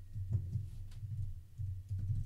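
Typing on a computer keyboard: a few irregular keystroke clicks, each with a low thump.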